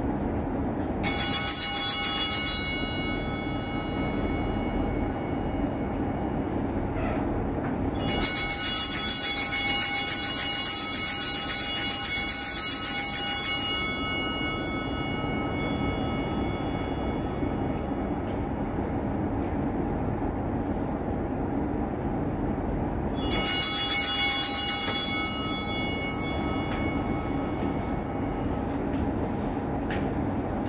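Altar bells (Sanctus bells) shaken by a server in three rings: a short ring, a long ring of about six seconds, then another short ring. This is the pattern rung at the consecration, with the long ring during the elevation of the Host.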